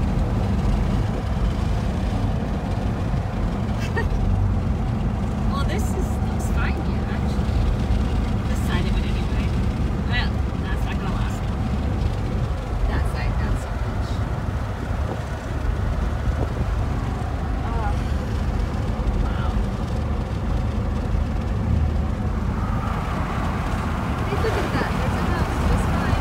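Steady low rumble of a car's engine and tyres heard from inside the cabin while driving along a highway.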